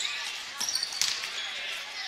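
Gymnasium game sound at a basketball game: a steady murmur of crowd and players, with a few short thumps of a ball bouncing on the hardwood court.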